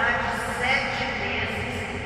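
Speech: a man reading a Bible passage aloud in Portuguese.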